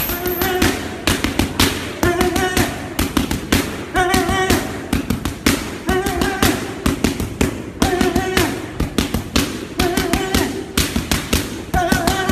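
Background music with a melodic phrase repeating about every two seconds, over rapid, sharp smacks of boxing gloves striking focus mitts.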